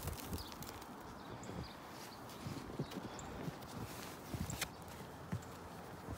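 Snow being scooped and brushed away by hand from a compost bin lid: scattered soft crunches and thumps, a few in quick pairs, over a faint steady hiss.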